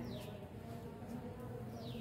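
Faint steady buzzing hum in a lull between speech, with two brief high falling chirps, one just after the start and one near the end.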